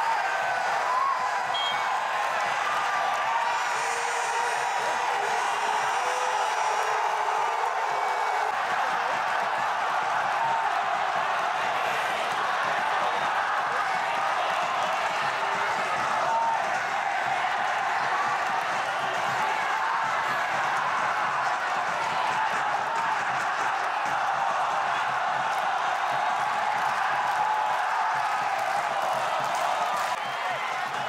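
Football stadium crowd: a steady din of many voices cheering and shouting, holding at one level throughout.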